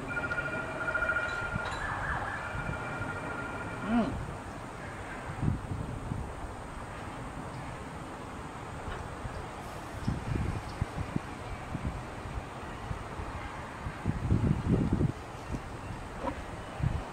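A distant siren holds a steady pitch, steps up briefly, then drops back, over the first four seconds. Later come low bumps and rumbles close to the microphone, loudest near the end.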